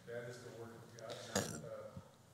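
Faint voice of a person in the congregation speaking from across the room, with one short, sharp sound a little past halfway.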